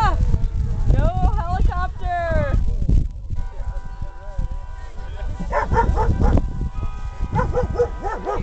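High-pitched yelping calls that rise and fall in short bursts, first in the opening seconds and again near the end, over people talking and a low rumble of wind on the microphone.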